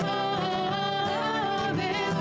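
Two women singing a song together, with an acoustic guitar strummed beneath. Their voices hold long, wavering notes.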